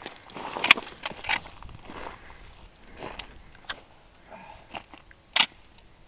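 A handful of short, sharp clicks and knocks, spaced a second or more apart, the loudest about a second in and again near the end: a carbine being handled after it did not fire as expected.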